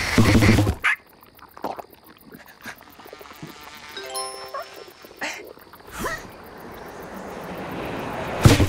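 Cartoon ostrich character's loud vocal cry, cutting off under a second in, followed by quieter cartoon sound effects: a brief run of stepped musical tones about four seconds in and a couple of sharp accents after it.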